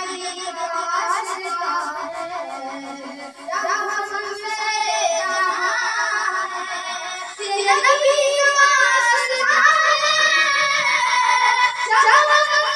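A boy singing an Urdu naat, a devotional song in praise of the Prophet, his voice gliding between held notes. The singing dips briefly about three seconds in and grows louder from about seven seconds on.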